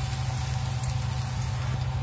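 Minced garlic frying in oil in a wok, a steady sizzle over a constant low hum.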